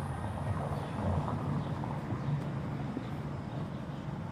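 Outdoor city street ambience: a steady low rumble with no distinct events standing out.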